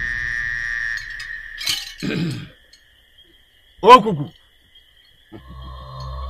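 Film soundtrack sound design: a held high tone fades out about two seconds in, then two short pitched cries fall in pitch, the second about four seconds in and the loudest. A low, droning music bed begins near the end.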